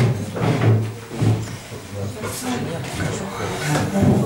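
Indistinct voices talking in the background, several people speaking at once.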